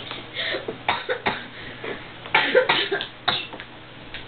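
A person coughing several times in short, rough bursts.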